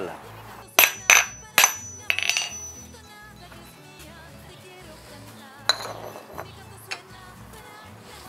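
Steel spur-rowel blank clinking against a bench vise as it is set in the jaws and clamped: three sharp metallic clinks with a brief ring about a second in, then two lighter clinks later.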